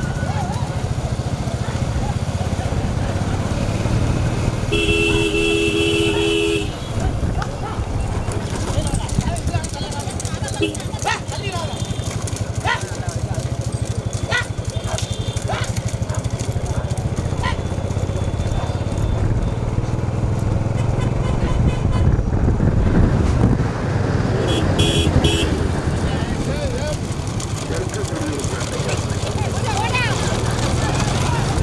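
Motorcycles running alongside at road speed, with a steady engine and road rumble. A two-note motorcycle horn gives one long toot about five seconds in and a few short beeps near the end.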